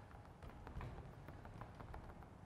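Faint light taps and handling noise at a painted canvas on an easel, barely above room quiet.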